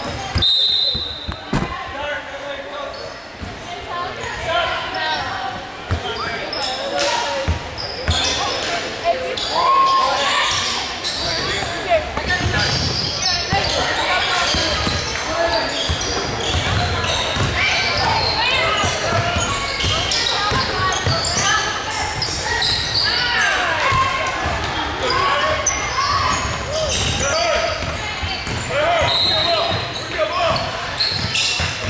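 A basketball game on a hardwood gym floor: a ball dribbling, with players' voices calling out throughout, heard in a large gym hall.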